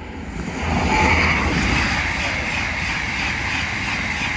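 TGV Duplex double-deck high-speed train passing through the station at speed without stopping. Its rushing noise builds over about the first second, then holds steady with a deep rumble underneath.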